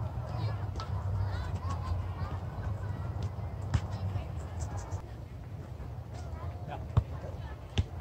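A soccer ball being kicked on grass: a sharp thud about halfway through and two more close together near the end, over a steady low rumble.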